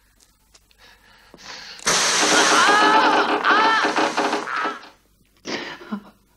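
A man screaming in pain: one long, strained cry starting about two seconds in and lasting about three seconds, followed by a short gasp near the end.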